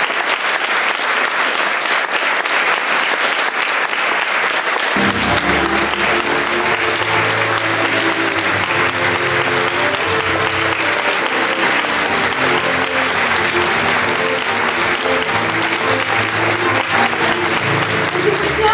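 A theatre audience applauding steadily. About five seconds in, a piano and string quartet begin an instrumental introduction beneath the applause.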